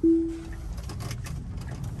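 A single electronic chime in a Tesla's cabin, one steady tone that fades away within about half a second, followed by the low steady hum of the car rolling off in traffic.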